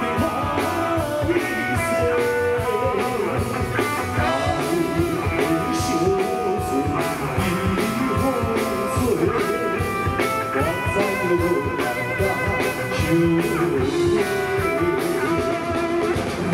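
Live song played loud through a stage sound system: a band accompaniment with guitar and a steady drum beat, and a male singer's voice with a wavering pitch on held notes.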